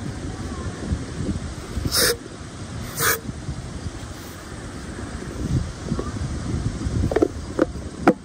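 Two short bursts of an aerosol can of starting fluid hissing into a small engine's carburetor air intake, about a second apart. Near the end come a couple of plastic clicks as the air filter cover is fitted back on.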